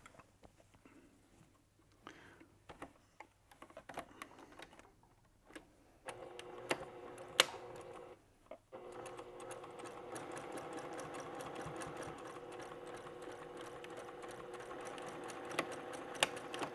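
Electric sewing machine stitching through layers of fabric. First come a few scattered clicks and rustles as the fabric is set under the foot. From about six seconds in the machine runs steadily, stops briefly just past eight seconds, then runs on.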